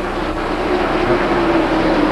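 NASCAR Winston Cup stock cars' V8 engines running at speed on the track, a steady drone holding one pitch.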